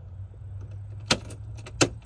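Ignition key and key ring being worked in a truck's ignition switch: two sharp metallic clicks under a second apart, over a low steady hum.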